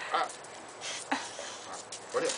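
A dog whimpers briefly, about a second in.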